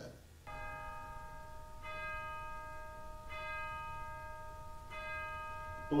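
A bell struck four times, about a second and a half apart, each stroke ringing on steadily until the next.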